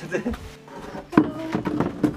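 Voices over quiet background music, with one sharp knock a little over a second in that is the loudest sound.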